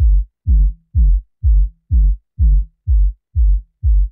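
Soloed low-end boom of a kick-drum loop, generated by Ableton Live 10's Drum Buss and cut down by a steep EQ Eight filter: deep bass thumps on every beat, a little over two a second, each one dropping in pitch.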